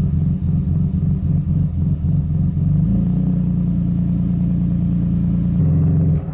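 Infiniti G35's 3.5-litre V6 idling at about 1,000 rpm with an uneven, lopey beat, as if it has cams. The rough idle comes from an air leak after a throttle body spacer install. It is choppy for the first half and runs steadier from about halfway through.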